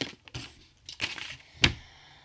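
Handling noise at a desk: a few short knocks with a paper rustle, the sharpest knock about a second and a half in.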